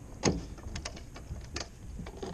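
A few short, sharp knocks and clicks as a smallmouth bass is handled and pressed onto a measuring board on a boat's carpeted deck. The loudest knock comes about a quarter of a second in.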